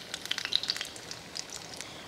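Khichdi pakoras (batter fritters) deep-frying in hot oil in a steel kadhai on a medium-high flame: a steady light sizzle peppered with many small crackles.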